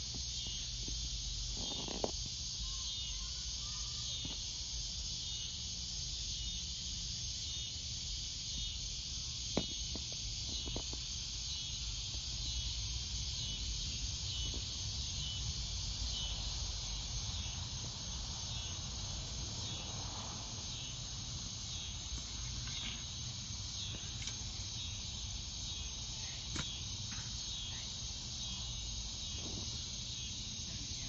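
Steady, high-pitched chorus of insects such as crickets at dusk, with a low rumble underneath and a few faint clicks.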